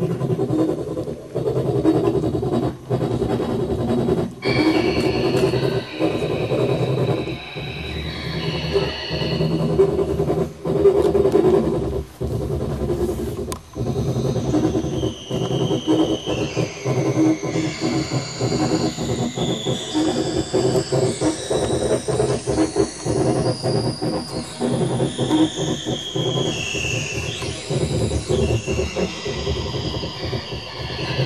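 Electronic music from a reacTable tabletop modular synthesizer: a dense, rumbling low drone, chopped by frequent brief dropouts. A few seconds in it is joined by short high synthesizer notes that step up and down in pitch.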